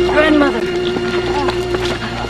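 Film score with a wordless singing voice holding one long note, joined briefly near the start by a rising-and-falling vocal cry.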